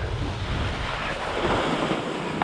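Wind rushing over the camera's microphone mixed with skis hissing and scraping over chopped snow on a downhill run: a steady noise that swells a little partway through.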